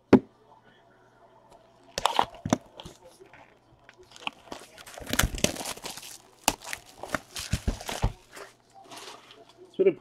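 Clear plastic shrink-wrap being torn and crinkled off a cardboard trading-card hobby box, in a run of crackling rips from about two seconds in to about eight seconds. A single sharp knock comes at the very start.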